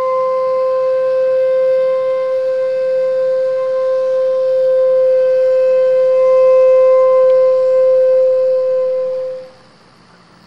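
Jinashi shakuhachi (Japanese bamboo flute) holding one long, steady note, which fades away about nine and a half seconds in.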